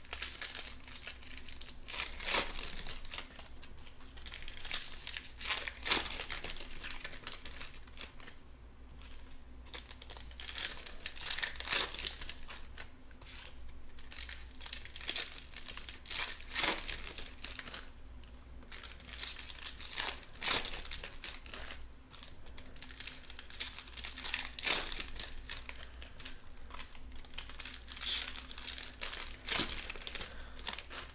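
Foil trading-card pack wrappers crinkling and tearing as Topps Chrome Jumbo packs are ripped open and the cards handled, with a sharp crackle every few seconds.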